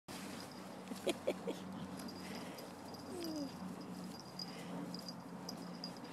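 Dog rolling and rubbing its back in wet grass, a faint rustle over a steady low hum. About a second in come three short squeaks, and around three seconds in a single falling whine.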